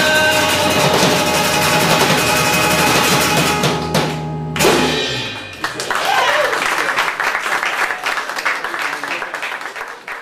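Live acoustic and electric guitars play the song's closing bars and end on a final chord about four and a half seconds in. The audience then applauds, with a few voices, until the sound fades out at the end.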